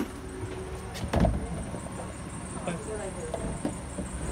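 A shop's sliding glass door in a wooden frame being taken hold of and pulled open. There is a loud knock about a second in, then lighter rattles and knocks, over a steady low background hum.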